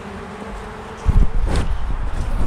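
Honeybees buzzing around an open hive of frames and comb, a steady hum with a few faintly wavering pitches. About a second in, loud bumps and rubbing of the camera being picked up and handled take over.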